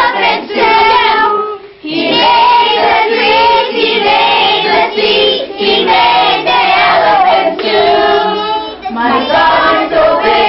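A group of children singing a song together, with a short break about a second and a half in.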